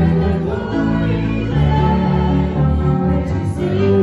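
A woman and a man singing a gospel hymn together into handheld microphones, with long held notes.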